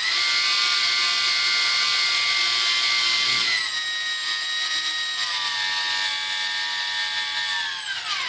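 Brushless A05 micro motor of a Micro Champ RC plane, driving a three-blade prop at high throttle: a steady high whine with many overtones, which steps slightly lower in pitch about three and a half seconds in and winds down at the very end. The owner takes its extra noise for resonance in the plane's body, with nothing rubbing on the rotor.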